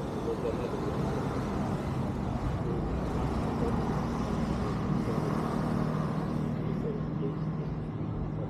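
Street traffic with a motor vehicle engine running close by; its steady low hum sets in about two and a half seconds in. Voices are heard faintly in the background.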